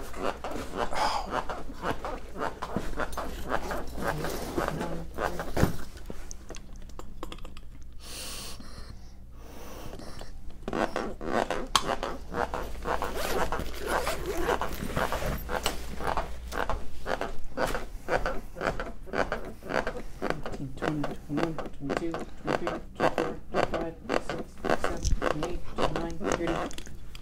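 Chest compressions on a CPR training manikin: a steady rhythm of about two presses a second, with a lull in the rhythm from about six to ten seconds in.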